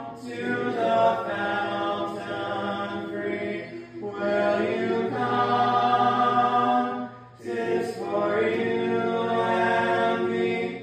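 Church congregation singing the invitation hymn together, unaccompanied, in long held notes, with brief breaks between phrases about four and seven seconds in.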